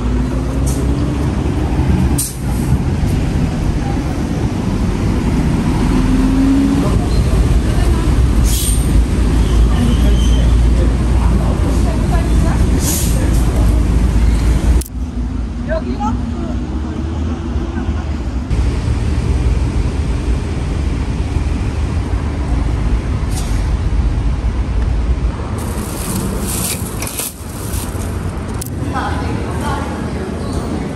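Busy city street ambience: a steady low rumble of road traffic with indistinct voices mixed in.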